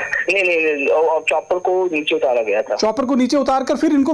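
Speech only: a person talking continuously, with a narrow radio-like quality.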